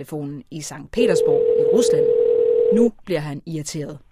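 A telephone line tone heard over the call: one steady tone at a single pitch, lasting about two seconds, as the call is put through before anyone answers. A voice talks before, during and after the tone.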